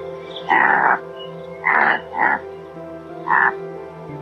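An antelope giving four short, harsh calls, the first the longest and the middle two close together, over background piano music.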